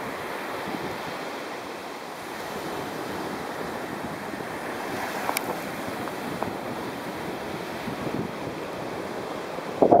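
Surf on a sandy beach mixed with wind buffeting the microphone, a steady rushing noise. A brief, louder thump comes right at the end.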